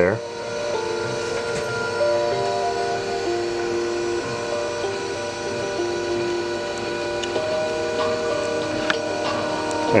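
Maslow CNC's chain-drive motors whining steadily as they move the router sled, the whine holding several tones that step up and down in pitch every second or so as the motors change speed. Music plays underneath.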